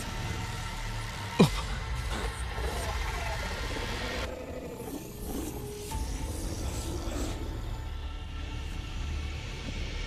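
Dramatic film score music over a steady low rumble. A single sharp, loud sound effect drops steeply in pitch about a second and a half in.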